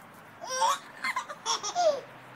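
A one-year-old boy laughing in about four short, high-pitched squealing bursts, starting about half a second in; the last one slides down in pitch.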